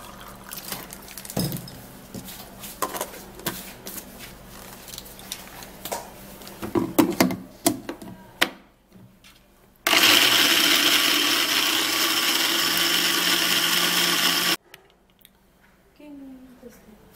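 Groundnuts and water in a countertop blender: water poured into the plastic jar, a few knocks and clicks as the jar is fitted onto the base, then the blender motor runs loud and steady for about five seconds, grinding the nuts, and cuts off suddenly.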